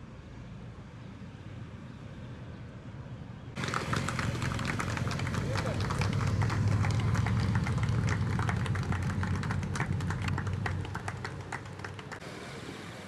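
Police motorcycles running at low speed in formation. About three and a half seconds in the engines become louder and a dense run of irregular claps sets in, spectators applauding the stunt riding, fading a little before the end.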